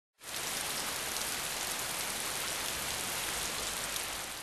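Steady, even hiss of falling rain.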